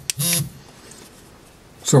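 A man's voice: one short word at the start, a pause of quiet room tone, then "So" just before the end.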